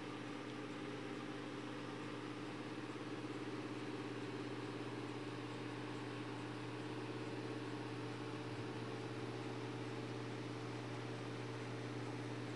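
Faint, steady low mechanical hum with several steady tones and no change: room tone with a background machine or appliance hum.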